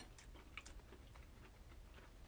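Near silence with a few faint, light clicks: fingers picking through food on a plate.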